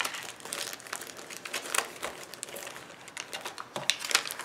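Plastic wrappers and packets crinkling as small wrapped items are handled and stuffed into a fabric pouch, in short, irregular crackles.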